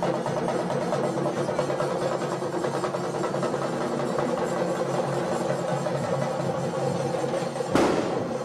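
Live band drumming fast and steadily on a set of tom-toms over steady held notes. A single sharp, loud crack stands out just before the end.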